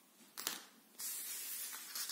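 A crocheted yarn shawl handled and slid across a tabletop: a short rustle about half a second in, then a soft steady rustling hiss lasting about a second and a half.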